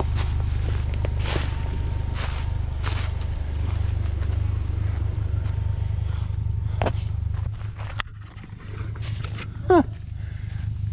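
Ford Ranger's 2.3-litre four-cylinder engine running low and steady as the truck creeps down a rocky trail, with scattered crunching steps on loose rock; the engine sound drops away about seven and a half seconds in. A short falling voice sounds near the end.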